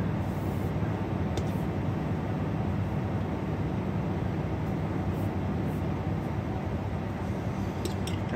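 Steady low mechanical hum, with a few faint soft ticks of handling now and then.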